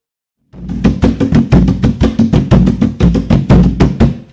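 Drum music: a quick, steady beat of about six strokes a second with deep drum tones, starting about half a second in.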